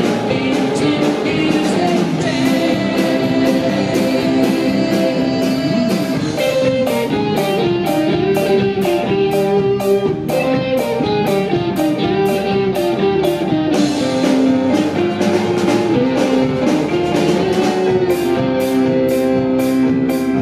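A rock band playing live on stage: electric guitar, electric bass, drum kit and keyboard together, loud and without a break.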